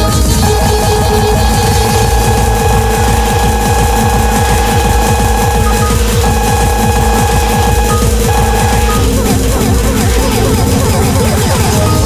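Windows error and system sounds from three computers' error cascades playing at once, layered into a loud electronic-sounding din of held tones over rapid low pulsing.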